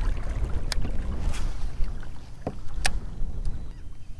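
Wind rumbling on the microphone out on open water, with a few scattered sharp clicks and knocks.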